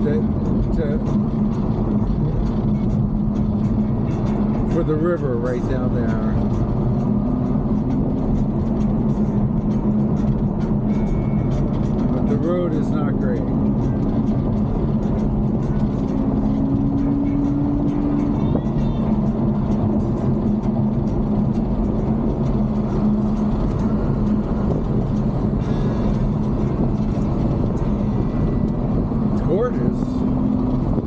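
Ferrari GTC4Lusso cruising, heard from inside the cabin: a steady engine drone mixed with road and tyre noise, its pitch lifting a little a few times as the speed changes.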